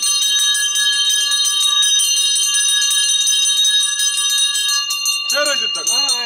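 Ritual hand bells of the daiva impersonators rung rapidly and without pause, a steady metallic ringing with several clear tones over a crowd's murmur. A man's voice calls out loudly near the end.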